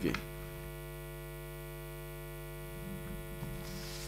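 A low, steady electrical mains hum with a stack of overtones, unchanged throughout.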